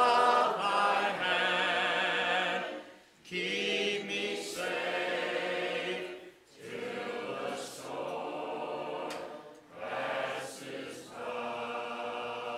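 A church congregation singing a hymn a cappella, many voices holding long notes. The phrases are separated by short breaks about three, six and a half and nine and a half seconds in.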